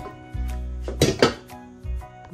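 Background music with a steady bass line, and about a second in a brief clatter, two quick clinks, of a glass lid being set down on a cooking pot.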